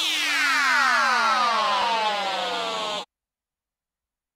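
The end of an electronic house track: a synthesizer sweep of many tones falling in pitch together. It cuts off suddenly about three seconds in.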